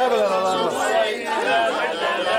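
Several people's voices talking over one another in a small group, with no one voice leading.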